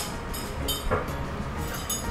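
Quiet background music with a steady low hum, over soft eating sounds: a spoon and chopsticks handled at a ramen bowl and a piece of meat bitten, with a few short clicks and smacks.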